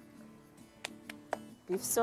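Faint background music with steady guitar-like notes, and three short sharp clicks about a quarter-second apart a little under a second in, as a packet of stock cubes is torn open by hand.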